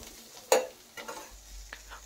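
Vegetables frying in a stainless steel kadai, stirred with a spatula: a faint sizzle, with a sharp spatula stroke against the pan about half a second in and a lighter one a second in.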